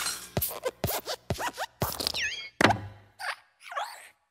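Cartoon sound effects for an animated light bulb hopping: a quick string of short plops and pops with a few falling squeaky whistles, and a louder thud about two and a half seconds in as the bulb lands on and squashes the letter I.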